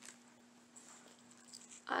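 Quiet room tone with a steady low hum and a few faint handling ticks as a pearl necklace is lifted out of its small plastic bag; a woman starts speaking right at the end.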